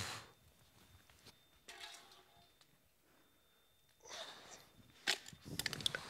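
A quiet pause on a stage: a faint voice about two seconds in, then several light knocks and taps on the stage floor in the last second.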